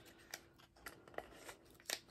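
Faint handling of a plastic lip balm tube, its tight-fitting cap and clear plastic packaging: a few small, scattered plastic clicks, the loudest near the end.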